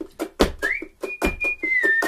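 Ukulele strummed in a steady, choppy rhythm, with a heavier strum a little under a second apart. About a third of the way in, a violin slides up into a high, pure held note, then steps down slightly near the end.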